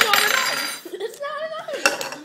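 A metal spoon and a ceramic bowl clink on a wooden table: one sharp clink at the start and another near the end, with a person's voice in between.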